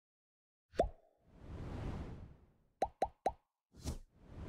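Cartoon-style pop sound effects and a whoosh from an on-screen button animation: one pop with a short rising tone about a second in, a soft whoosh that swells and fades, then three quick pops in a row near the end and one more just before it ends.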